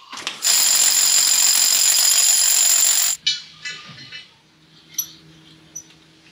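Hammer drill with a long masonry bit boring into the rock ledge, running hard with a high whine for about two and a half seconds and then stopping suddenly. Light clicks and taps follow.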